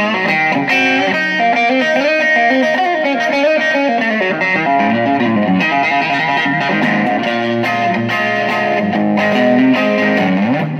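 Telecaster-style electric guitar fitted with a Musiclily ashtray bridge and Gotoh In-Tune saddles, played on its neck pickup with a little overdrive. It runs through a stream of licks and chords with string bends.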